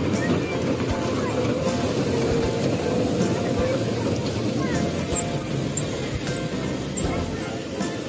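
Outdoor crowd-and-music ambience: indistinct voices and music over a steady rumbling noise, with a few high chirps about five to seven seconds in.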